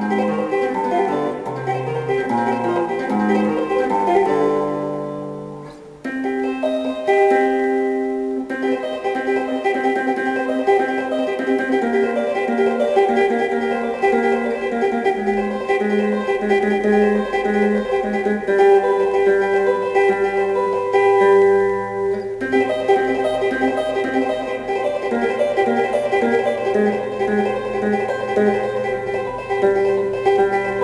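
Double-neck guitar played by eight-finger tapping, fingers of both hands hammering notes onto the two fretboards: a fast classical-style piece with low bass notes under a running melody. The notes die away briefly about six seconds in, then the playing resumes.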